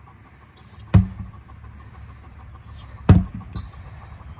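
Sledgehammer slamming down onto a large tractor tire: two heavy thuds about two seconds apart, the second a little louder.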